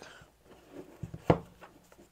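Hands handling a cardboard knife box on a desk mat: light scraping and rubbing, with one short knock about a second in.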